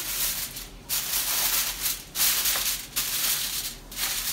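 Aluminium foil crinkling as it is pressed and crimped over a baking pan, in four rustling bursts of about a second each with short breaks between.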